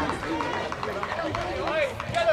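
Many overlapping voices of spectators and players talking and calling out at once, none clear enough to make out, in the moments after a goal at a small football ground.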